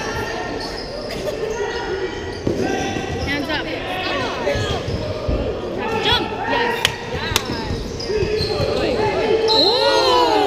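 Sounds of a basketball game in a large gym: players and spectators calling out over the bounce of the ball on the court, with two sharp knocks about seven seconds in.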